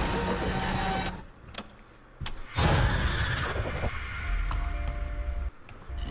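Horror film trailer soundtrack: dense, noisy sound design cuts out about a second in, two sharp clicks follow, then a sudden loud hit comes about two and a half seconds in. It settles into a low rumble with a thin steady tone that stops shortly before the end.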